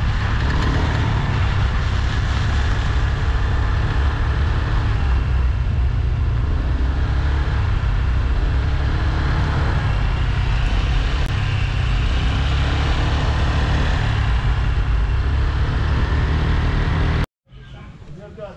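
Motor scooter riding along a road: a steady, loud mix of small engine and wind noise that cuts off suddenly near the end.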